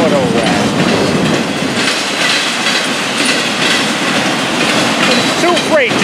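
Freight train's autorack cars rolling past close by, with steady wheel and rail noise.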